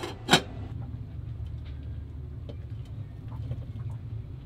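A metal lid clanks sharply onto a small cooking pot (a billy) on the galley stove. A steady low hum with a few faint small clicks follows.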